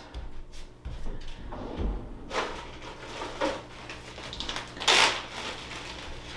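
Footsteps and a drawer being opened, rummaged through and shut: a string of short knocks and scrapes, with a louder clatter about five seconds in.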